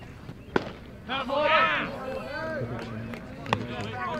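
A baseball pitch smacking into the catcher's mitt with one sharp crack about half a second in, followed by spectators shouting loudly.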